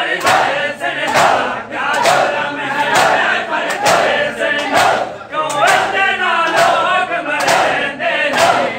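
Men chanting together in mourning while striking their chests in matam, the hand slaps landing in a steady beat about twice a second.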